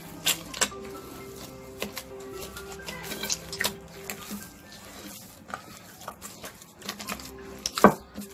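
Soft background music with slow held notes, over hands kneading dough in a clay bowl: scattered soft slaps and sharp knocks as the dough is pressed and folded against the bowl, the loudest knock near the end.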